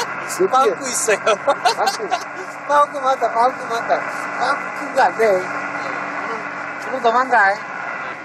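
Men talking and laughing over the steady drone of a small fishing boat's engine.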